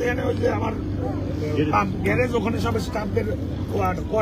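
Men talking in Bengali among a crowd, over a steady low hum.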